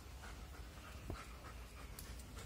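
A dog breathing faintly, with a single sharp click about a second in.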